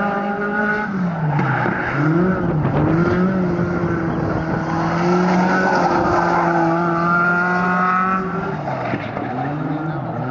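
Open-wheel dirt-track race car's engine running hard as it laps the oval. The revs dip and climb back about a second in and again near two and three seconds, hold steady through the middle, then fall away near the end.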